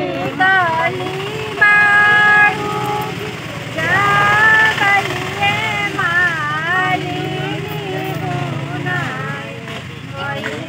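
Women's voices singing a traditional wedding song, the melody rising and falling with long held notes about two and four seconds in, over a steady low hum.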